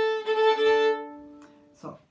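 Violin bowed in a short phrase of a few notes, with two pitches sounding together for a moment; the notes ring on and fade away about a second and a half in.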